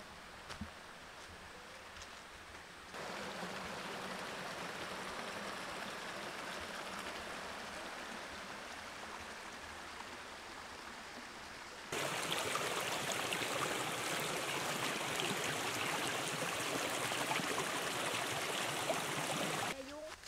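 Small mountain stream running over a bedrock slab, a steady rushing hiss of water. It comes in suddenly about three seconds in, jumps louder about halfway through, and stops abruptly just before the end.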